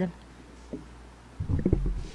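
A microphone on a stand being gripped and repositioned, giving low thumps and rumbling handling noise that begin about one and a half seconds in, after a short stretch of low steady hum.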